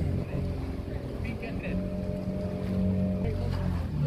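Small tour boat's engine running with a steady low hum as the boat moves along; its droning note is clearest and steadiest through the middle couple of seconds.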